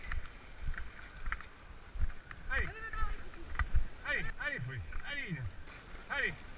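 A dog yelping excitedly, a series of about six short, high calls, each sliding down in pitch, starting a couple of seconds in. Under them, low rumble and knocks from wind and handling on a moving camera.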